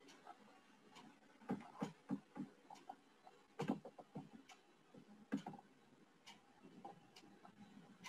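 Faint, irregular clicks and taps of computer input, unevenly spaced, with a few louder clicks, the strongest about three and a half and five seconds in.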